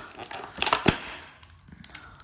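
Crinkling and clicking of a thin plastic tray and lollipop wrapper as a Chupa Chups lollipop is pulled out of a cardboard advent-calendar door, with one sharp click near the middle.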